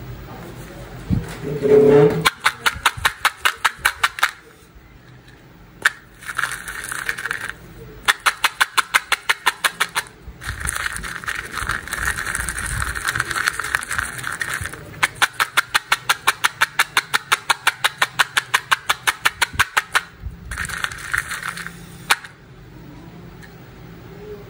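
Candy-coated chocolates rattling in a small plastic cup as it is shaken back and forth: fast, sharp rattles about seven a second, in several bouts of one to five seconds with short pauses between.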